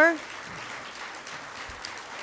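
Audience applauding steadily, a fairly faint even patter of many hands clapping.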